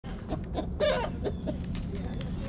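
Flock of hens clucking, a run of short calls with the loudest a little under a second in, over a low steady rumble.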